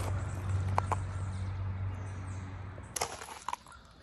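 Outdoor background with a steady low hum, two short high chirps about a second in, and a sharp click near three seconds in.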